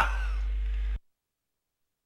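The fading tail of an announcer's voice over a steady low hum, which cuts off abruptly about a second in, leaving dead digital silence.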